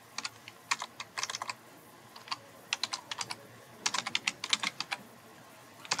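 Typing on a computer keyboard: several bursts of quick keystrokes with short pauses between them, stopping shortly before the end.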